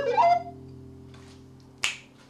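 Wooden recorder ending its last phrase with a short upward slide, over a held backing-track chord that fades away. One sharp click from the hands near the end.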